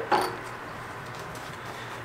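Steady low background hiss of room noise, with no distinct sounds.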